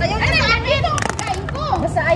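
Several women's voices talking and exclaiming over one another, high-pitched and excited, with a few sharp clicks about a second in.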